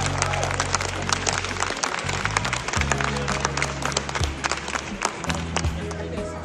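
An audience applauding, with a dense patter of claps over music carried by a deep bass line.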